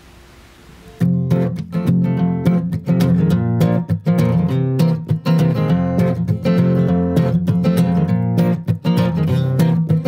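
Acoustic guitar strummed steadily as the instrumental intro of a country song, starting about a second in after a brief quiet.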